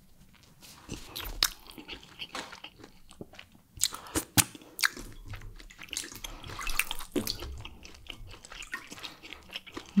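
Close-miked eating sounds: chewing and biting into a meal of fufu, palm nut soup and barbecued turkey wings, with many irregular sharp mouth clicks and snaps.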